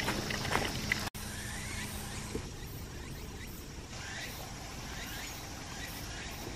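A small spring trickling from a rock spout, cut off after about a second by an edit. Then quiet outdoor ambience, with a faint falling call repeated about once a second near the end.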